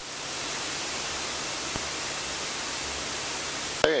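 Steady hiss of cockpit airflow and engine noise coming through the aircraft intercom. It switches on suddenly and cuts off when speech resumes near the end.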